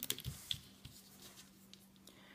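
Faint small clicks and light scraping of rubber loom bands being placed onto the pegs of a plastic Rainbow Loom, mostly in the first half-second, over a low steady hum.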